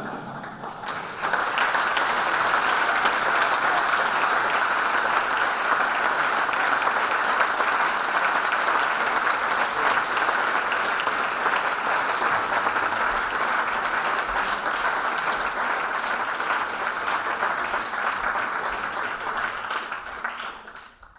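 Large lecture-theatre audience applauding. The clapping swells in about a second after a brief laugh, then holds steady and loud, easing slightly near the end.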